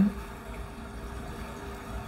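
Faint steady room tone in a pause between speech, with a thin, even hum running underneath.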